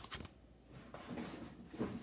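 Rummaging in a cardboard box: two sharp knocks right at the start, then a run of rustling and scraping as things are moved about and lifted out, from about a second in.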